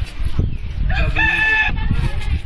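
A rooster crowing once, a single call of just under a second starting about a second in, over a low rumble.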